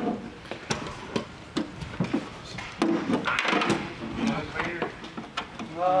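Irregular clicks and knocks of hand tools, a ratchet wrench being worked by hand, with indistinct voices in the background.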